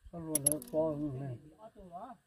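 Fishing reel mechanism clicking sharply a couple of times about a third of a second in, over a drawn-out wavering pitched sound that fades out about two-thirds of the way through.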